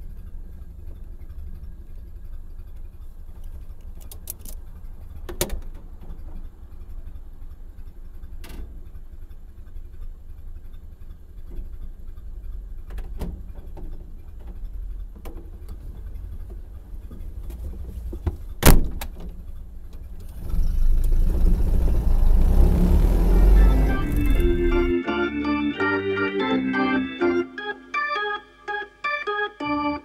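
Ford Model A's four-cylinder engine running as the car drives slowly, heard as a steady low rumble with scattered clicks and one sharp, loud click about two-thirds of the way through. Then comes a loud rushing noise, and organ music takes over near the end.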